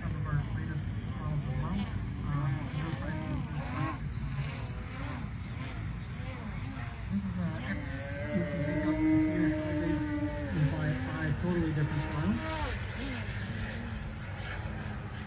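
Indistinct voices over a steady low rumble, with the talking clearest in the second half.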